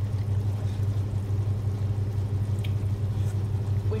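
A steady low hum throughout, with the faint sound of a tomato-and-stock paella simmering in a frying pan on a gas hob.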